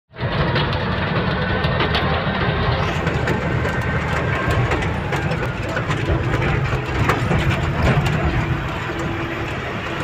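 Heavy tipper truck's diesel engine running steadily while driving, heard from inside the cab, with frequent rattles and knocks from the cab over a rough dirt road.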